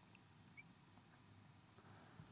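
Near silence, with a faint squeak or two of a marker writing on a glass lightboard.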